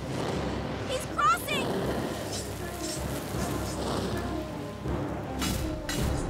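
Cartoon soundtrack: background music under a crackling fire effect with a low rumble. About a second in comes a short, wavering vocal cry, and a brief swish comes near the end.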